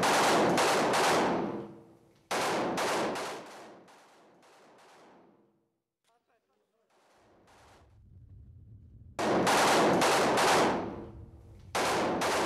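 Kalashnikov assault rifle fired in four short bursts of rapid shots, each burst dying away in a ringing echo. A near-silent gap of about a second falls midway.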